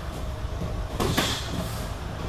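A strike lands in light kickboxing sparring: one sharp smack on protective gear about a second in, with a few lighter knocks and shuffles on the mat around it.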